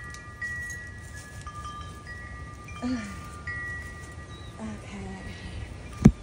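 Wind chimes ringing, several high tones held and overlapping, with fresh strikes every second or so.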